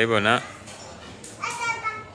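A brief loud vocal call right at the start, then fainter voices in the background, like children calling or playing, about a second and a half in.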